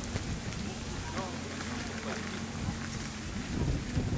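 Steady wind noise on the microphone, with faint voices in the background.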